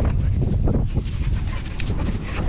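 Australian kelpie making short vocal sounds, with wind rumbling on the microphone.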